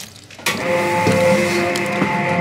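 Electric dough mixer switching on about half a second in and running steadily with a hum of several level tones, its arm churning flour and water into noodle dough.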